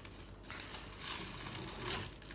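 Clear plastic bag crinkling as it is handled and a book is slid out of it, the rustling starting about half a second in.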